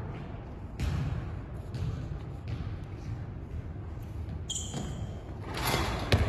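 Basketball bouncing on a gym's hardwood floor, a bounce about every second, in a large echoing hall.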